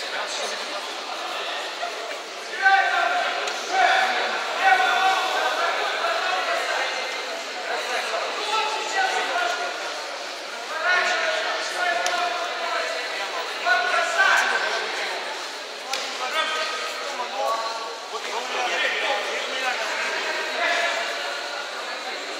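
People shouting in bursts every few seconds in a large sports hall during a judo bout, over the steady murmur of the hall, with a few sharp thumps.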